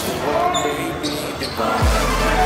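Live basketball game sound in a gym: a basketball dribbling on the hardwood court amid crowd voices. A deep music bass note comes in right at the end.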